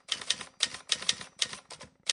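Typewriter sound effect: a quick, uneven run of key strikes, several a second, with one last separate strike just after.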